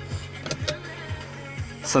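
Two sharp clicks about half a second in as the push-to-open overhead sunglass holder is pressed, unlatches and drops open. Background music with a steady beat runs underneath.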